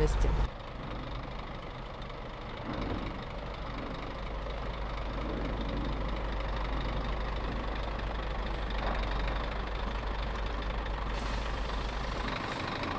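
Scania tractor unit's diesel engine running at low revs as the truck reverses slowly under the front of a tank semitrailer; a steady low rumble that grows a little louder about three seconds in.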